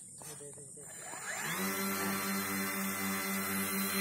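Twin Emax 2212 820Kv brushless motors with 10×4.5-inch propellers on an RC plane spooling up: the pitch rises about a second in, then settles into a steady, louder propeller buzz at full throttle for a hand launch.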